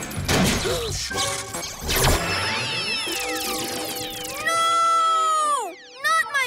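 Cartoon sound effects over the musical score: a sharp crash about two seconds in, then a flurry of falling whistling sweeps, and finally a loud, long held tone that drops in pitch and cuts off near the end.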